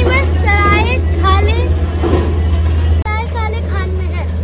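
Steady low rumble of road traffic under a young girl's voice speaking in short phrases.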